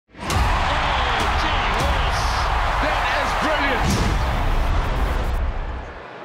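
Produced highlights intro sting: a bass-heavy music bed with sharp impact hits over a loud rushing roar and shouting voices. It cuts off sharply just before the end.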